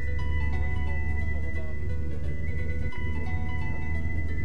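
Background music with long held notes over a steady deep bass.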